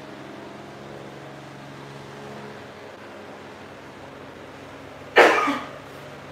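A person coughs once, loudly and close by, about five seconds in, over a steady low hum.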